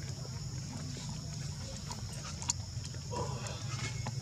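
A baby macaque suckling at its mother's nipple, with a few small wet clicks and smacks, over a steady high insect drone and a low steady hum.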